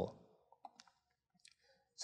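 A few faint computer mouse clicks against near silence: several in the first second and one more about halfway through.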